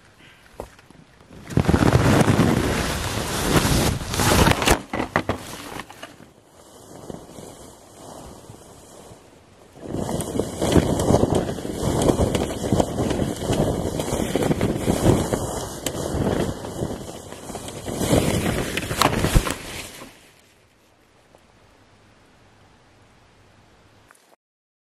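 Loud rustling and buffeting of tent fabric against the camera's microphone in two long spells, with a few sharp knocks, as the tent with the camera inside is knocked over and tumbled.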